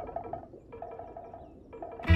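Mobile phone ringtone: a short melody of quick pitched notes, repeating about once a second, ringing unanswered.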